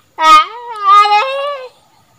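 A man's long wordless yell: one drawn-out call that rises, steps up in pitch about a second in, then falls away and stops.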